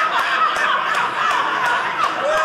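Audience laughing: many voices together in a loud, sustained wave of laughter.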